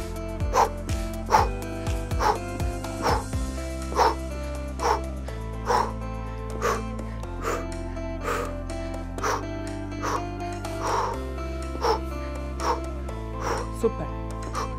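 Background workout music with a steady beat, a little under one beat a second, over a bass line that changes every couple of seconds.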